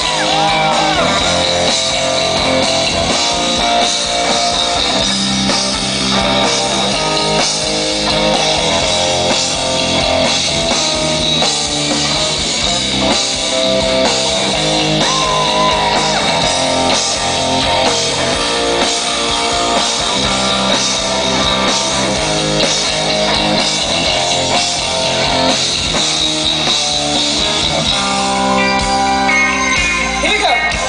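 A gothic metal band playing live at full volume: distorted electric guitar and drum kit, loud and steady.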